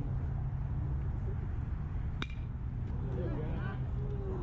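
A metal baseball bat hits a pitched ball with one sharp ping about two seconds in, ringing briefly. Spectators' voices call out just after, over a steady low rumble.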